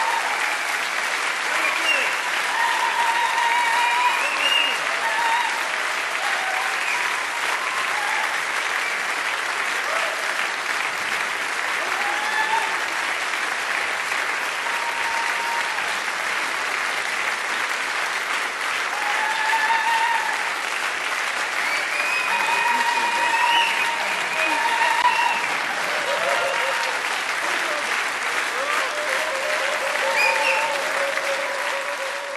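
A large concert audience applauding steadily throughout, with scattered voices calling out and cheering over the clapping.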